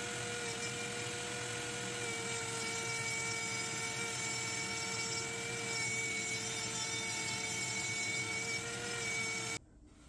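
High-speed rotary tool with a grinding stone running at a steady whine while it grinds the shank of a bolt spinning in a lathe chuck down to a straight pin. The sound cuts off suddenly near the end.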